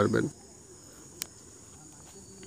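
The last syllable of a spoken word, then faint background noise with a steady thin high-pitched tone. A single sharp click comes about a second in.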